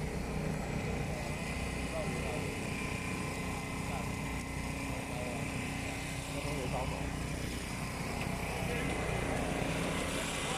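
A steady low engine hum with many voices talking over it.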